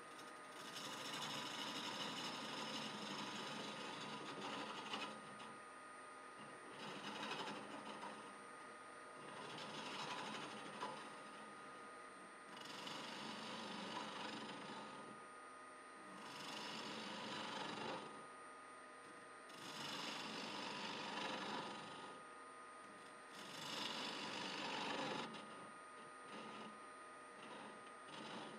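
A gouge cutting into the end grain of a small bowl spinning on a wood lathe as its inside is hollowed out, in about seven cuts of one to three seconds each, a few seconds apart. The lathe keeps running steadily between the cuts.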